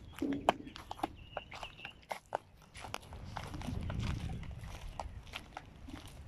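Irregular crunching footsteps on gravel and bark mulch, with a low rumble swelling in the middle.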